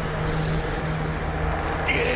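Anime battle sound effect: a steady, dense rumble with a low hum beneath it, the sound of a straining clash; a higher ringing tone comes in near the end.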